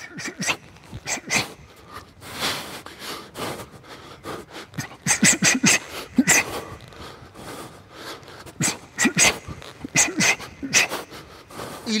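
A boxer shadowboxing, breathing out in short, sharp hisses with each punch, the exhales coming in quick irregular clusters of combinations, with an occasional brief grunt.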